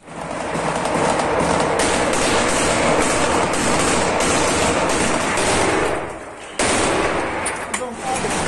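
Sustained automatic rifle fire at close range, many shots running together into a dense, continuous din. It drops away briefly about six seconds in, then starts again abruptly.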